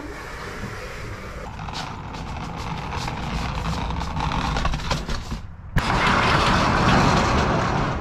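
Couch being moved on a dolly through a box truck's cargo area: continuous rumbling and rattling with scattered knocks, louder after a sudden change about six seconds in.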